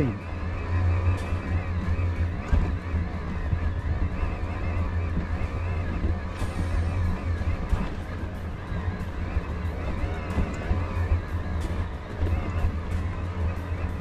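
E-mountain bike ride up a steep grassy slope: a steady low drone, with many small ticks from the tyres and drivetrain over rough ground.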